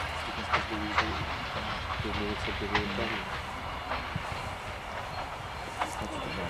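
Railway carriage rolling along the track: a steady low rumble with a few sharp clicks of the wheels over rail joints, and voices talking.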